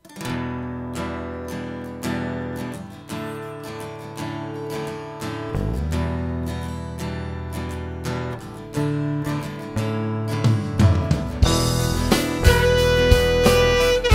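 Instrumental opening of a live pop-rock song: a steel-string acoustic guitar strums chords, with an electric bass guitar joining underneath about halfway through. The music grows louder with sharper hits from about ten seconds in, and a saxophone enters near the end with a long held note.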